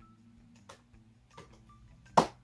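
A few faint, isolated laptop keyboard keystrokes as a short word is typed, over near silence.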